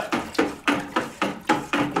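Wooden spoon stirring nutrient solution in a plastic five-gallon bucket, knocking against the bucket's side about three times a second.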